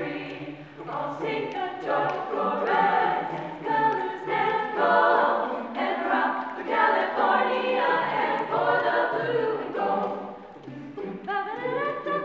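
Mixed a cappella jazz choir singing in close harmony over a low sung bass line, with short sharp clicks keeping time. The voices drop away briefly about ten and a half seconds in, then come back on a new chord.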